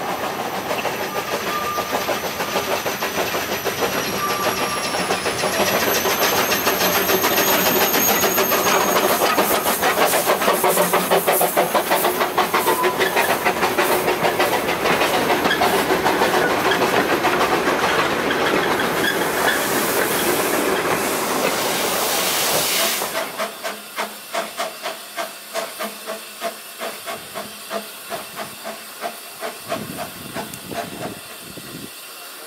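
Narrow-gauge train rolling past close by: a loud rush of running noise with a fast clatter of wheels over the rail joints. About three-quarters of the way through, the sound drops and a steam locomotive takes over, working slowly with its exhaust beating at about two puffs a second.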